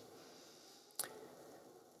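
Faint room tone with one short, sharp click about a second in.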